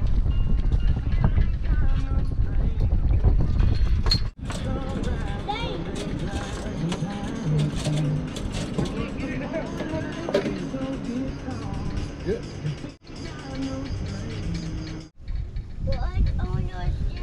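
Wind rumbling on the microphone for about the first four seconds, then, after a sudden cut, music mixed with indistinct voices.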